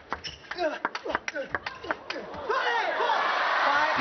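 Table tennis rally: the celluloid-type ball clicks sharply off the bats and table in quick succession. About two and a half seconds in, the point ends and audience applause rises.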